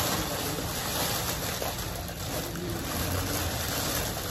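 A thin plastic shopping bag being handled and untied, giving a continuous crinkling rustle.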